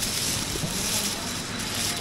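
Steady outdoor street background noise, with a faint voice briefly heard near the middle.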